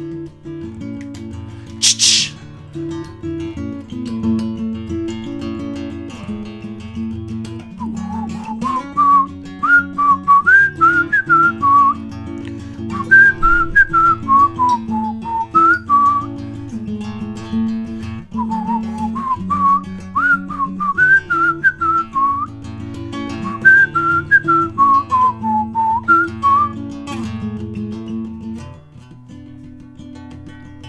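Acoustic guitar played through an instrumental break. From about eight seconds in, a whistled melody rises and falls in phrases over the guitar and stops a few seconds before the end. There is a brief sharp noise about two seconds in.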